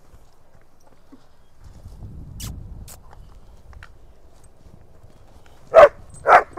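A Kathiyawadi horse's hooves thud softly on bare dirt as it is led and moves off. Near the end a dog barks once, sharply and loudly.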